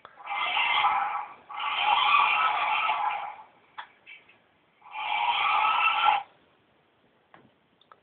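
Small electric motor of a remote-controlled toy car whirring in three bursts of one to two seconds each, with short pauses between, heard through tinny computer speakers. The last burst cuts off about two seconds before the end, as the playback stalls to buffer.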